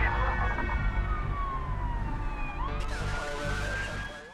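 A siren wail, falling slowly in pitch and then rising again after about three seconds, over the low pulsing beat of a theme tune that is fading out.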